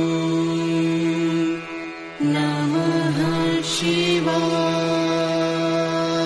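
Devotional chanting: a long held note over a steady drone, dipping briefly about two seconds in, then voices come back in with wavering pitch before settling on the steady held tone again.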